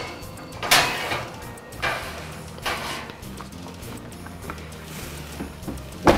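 Metal knocks and clatter as a cake pan is slid onto an oven rack and the wall oven's door is shut, several clunks in the first three seconds, over background music.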